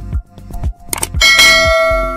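Click, then a bright bell ding from a subscribe-and-notification-bell sound effect, ringing out and slowly fading, over background music with a steady beat.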